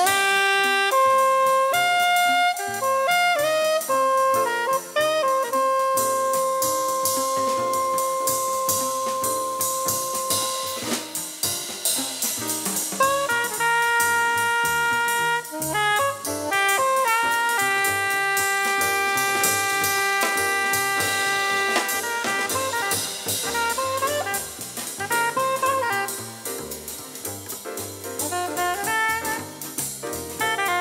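Jazz quartet playing a jazz waltz: a soprano saxophone carries the melody in long held notes over double bass, piano and drum kit with cymbals.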